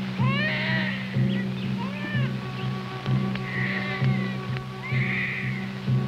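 Film score music with a low beat pulsing about once a second under held notes, with high, sliding animal calls heard over it several times.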